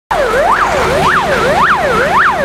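Fire engine's electronic siren on a fast yelp, its pitch sweeping up and down about twice a second.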